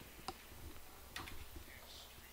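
A few faint computer keyboard clicks: one soon after the start and a short cluster about a second in.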